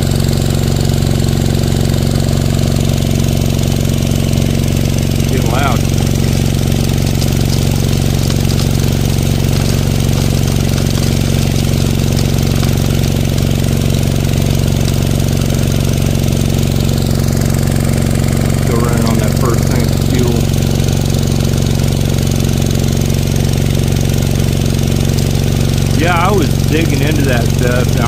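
Small gasoline engine of a gold-prospecting suction dredge running at a steady speed and driving its pump, with water splashing out of the sluice box.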